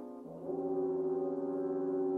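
Orchestral music from a modern classical work: a held chord fades, and about half a second in a new sustained chord swells in and is held steady.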